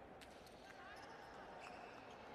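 Faint indoor volleyball arena ambience: low distant voices with a few light taps and short squeaks.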